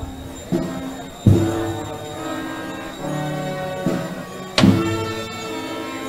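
Brass band playing a slow procession march: held brass chords, with a heavy drum-and-cymbal stroke about a second in and another past four and a half seconds.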